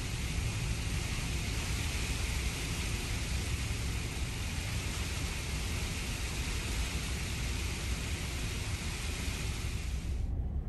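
Steady low rumble with a hiss over it, heard from inside the passenger lounge of the MV Loch Seaforth ferry in a storm: the ship's running engines and the storm outside.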